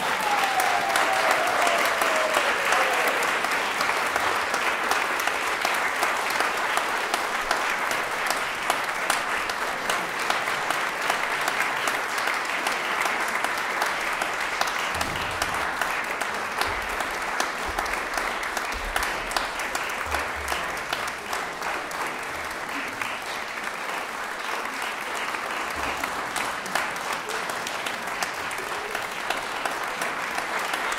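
Audience applauding, a steady dense clapping that holds without a break.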